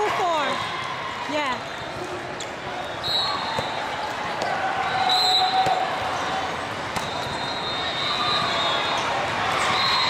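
Indoor volleyball in a large, echoing hall: volleyballs are bounced and struck in scattered single thuds over a background of overlapping players' voices and calls, with a few brief high-pitched squeaks.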